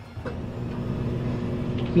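A steady low background hum with a couple of faint knocks, and a man's voice starting right at the end.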